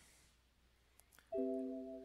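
Trading software's order-fill alert: an electronic chime tone starts about a second and a half in and holds, fading slightly, signalling that the short order has just been filled. Two faint clicks come just before it.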